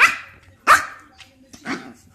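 Yorkshire terrier puppies barking while they play-fight: three short, sharp barks, the second the loudest and the last one softer near the end.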